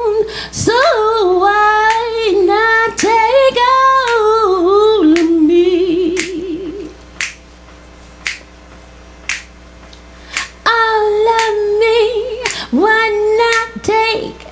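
Woman singing a cappella, ending a line on a held vibrato note about seven seconds in, over a steady clicking beat kept by hand at about one a second. The beat carries on alone for a few seconds before the voice comes back near the end.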